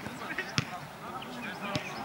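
A football being kicked on artificial turf: a sharp thump about half a second in and a softer one near the end, with players shouting across the pitch.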